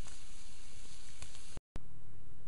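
Steady hiss of outdoor background noise with a few faint clicks, cut by a brief moment of dead silence about three-quarters of the way in at an edit; after it a quieter background with a low hum carries on.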